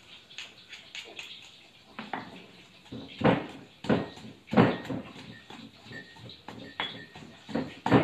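Stone pestle pounding in a heavy stone mortar, smashing garlic, chilies, galangal and palm sugar into a moist paste. Irregular dull thuds, the strongest in the middle of the stretch.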